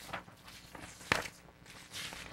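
Sheets of paper being leafed through and turned on a table: soft rustles, with one sharp paper snap or tap a little after a second in.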